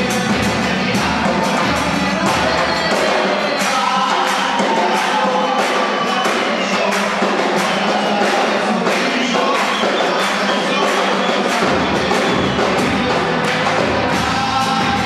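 Live band performing a murga song: several voices sing together over steady drum beats. The low bass drops out for much of the middle and comes back near the end.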